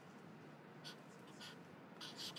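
Faint scratching of a pen writing on paper, with a couple of short strokes about a second in and again just before the middle.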